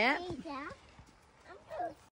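Only voices: the tail of a woman's speech, then short voiced sounds, with a quiet gap between them.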